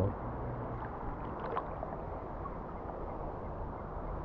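Shallow river water swishing around a person wading, a steady wash with a few faint small splashes.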